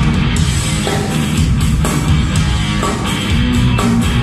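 Live rock band playing loud and steady through the stage PA: electric guitar and bass over a full drum kit.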